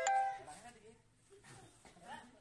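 A single bell-like chime with a sharp strike, its ringing tones fading away within about half a second.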